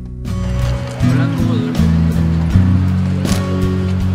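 Background music with sustained low chords that change about every second, and light percussive strikes.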